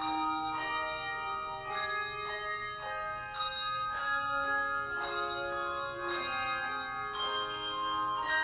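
Handbell choir ringing a hymn tune: chords of several bells struck together about once a second, each left ringing into the next.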